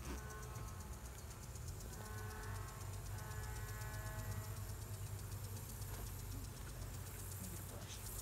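Honey bees buzzing over an opened hive: a steady hum from the colony.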